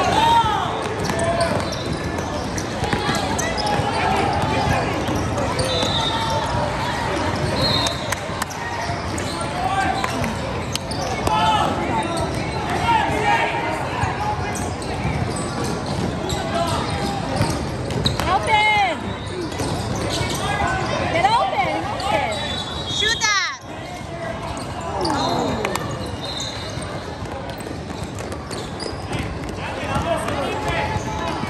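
Indoor basketball game: a basketball bouncing and dribbling on the court, with crowd voices and shouts echoing through the gym hall. A few short high squeaks stand out near the two-thirds mark.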